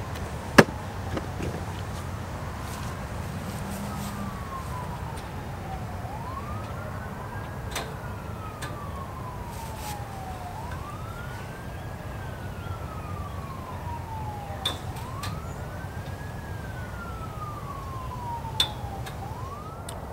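An emergency-vehicle siren wailing, rising quickly and falling slowly in pitch about every four seconds, over a steady low rumble. A few sharp knocks stand out, the loudest about half a second in.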